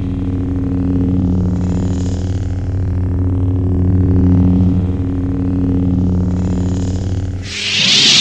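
Lightsaber sound effect: a steady low electric hum, which gives way to a loud hissing burst near the end.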